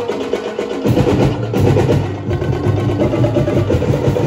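Percussion-driven dance music with rapid drumming; a deep bass drum joins about a second in.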